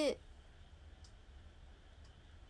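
A woman's voice trails off at the start, then quiet room tone with a faint small click about halfway through.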